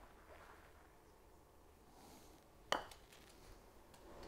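A putter striking a golf ball once, about two and a half seconds in: a single sharp click that sounds solid, from a stroke with slight forward shaft lean. Faint room tone otherwise.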